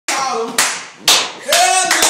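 Sharp hand claps, about two a second, with people's voices calling out between them.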